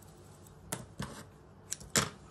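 A few light clicks and taps of sewing tools being handled on a cutting mat, four in all, the loudest near the end.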